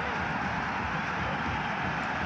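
Steady hiss of rain falling in an open-air football stadium, even and unbroken.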